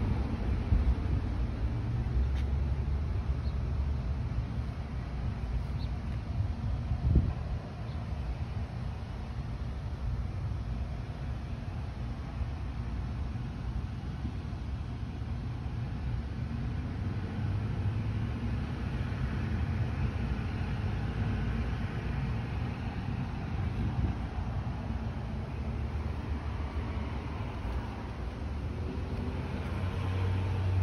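Steady low rumble of road traffic, with a single short knock about seven seconds in.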